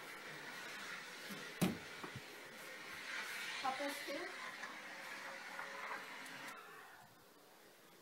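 Faint, indistinct voices in a small room over handling noise, with one sharp knock about a second and a half in and a lighter one soon after. The sound drops to a quieter hush near the end.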